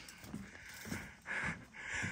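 Soft breathing, two short breaths in the second half, with faint footsteps on a wooden boardwalk.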